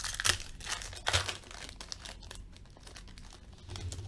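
Shiny foil trading-card pack wrapper being torn open and crinkled by hand: a few sharp rips in the first second and a half, then quieter rustling.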